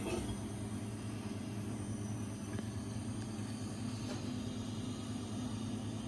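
Homebrewed stout pouring from a stout tap into a pint glass, pushed by 75/25 beer gas: a steady hiss with a faint low hum under it.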